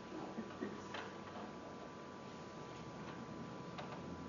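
Quiet room tone in a hushed sanctuary: a steady faint hum and thin tone, with a few scattered soft clicks, about a second in and again near the end.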